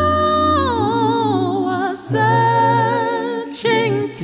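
Male singer holding a high note labelled E-flat 5 for about half a second, then running down through a descending run. After a short break near two seconds he sings another phrase with vibrato, over a low steady accompaniment.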